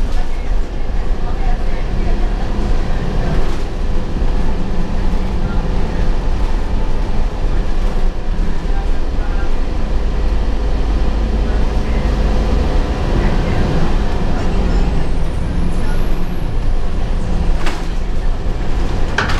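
Cabin ride noise of a 2003 Gillig Phantom transit bus under way: steady engine and road rumble with a constant hum. A faint high-pitched tone rises and then falls near the end.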